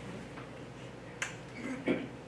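Room tone with a single sharp click about a second in, then a short dull knock just before the end.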